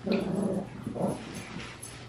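Two small Yorkshire terriers play-fighting, growling at each other in short bouts.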